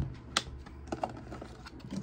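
A plastic takeout bowl with a clear plastic lid set on a desk and a plastic fork lifted off the lid: several sharp plastic clicks and taps, the loudest a little after the start.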